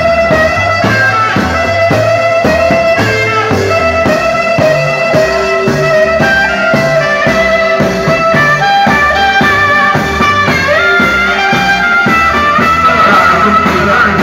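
Loud amplified band music with a steady beat of about two beats a second and a bass line, played live for the carriers of a festival giglio tower.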